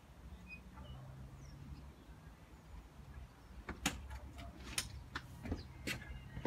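Footsteps on a paved path coming up to the microphone: a run of sharp, irregular knocks and scuffs starting a little past halfway. Before them there is only a low steady hum and a few faint bird chirps.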